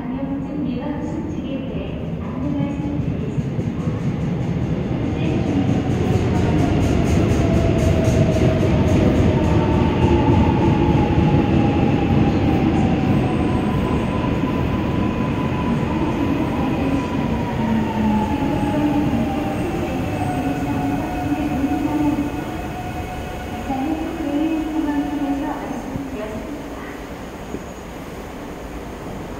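Korail Class 351000 electric multiple unit arriving at a station platform: the rumble of the train grows to a peak about ten seconds in, then eases as it brakes. Its electric drive whines in tones that fall steadily in pitch as it slows to a stop.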